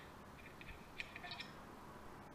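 A few faint, light clicks and ticks as the steel pipe barrel and hinged receiver of a homemade break-barrel shotgun are handled, scattered through the middle of the stretch.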